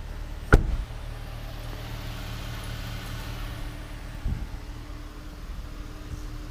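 A 2018 Jeep Cherokee's front door shut with one sharp bang about half a second in, over a steady low hum. A softer knock follows about four seconds in.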